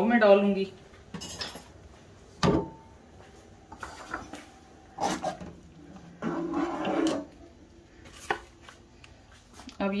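Kitchen handling noises: a metal saucepan and crockery knocked and set down on a counter. The loudest is a sharp metallic clink about two and a half seconds in that rings briefly, followed by smaller knocks and a scraping clatter.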